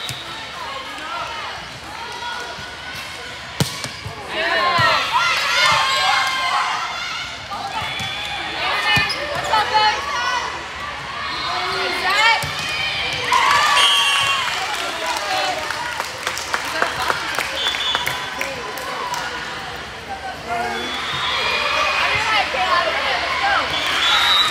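Indoor volleyball rally on a hardwood gym court: sharp ball strikes and sneakers on the court, under spectators shouting and cheering in several bursts.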